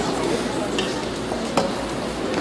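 Audience applauding, an even patter of clapping with one sharper clap about one and a half seconds in.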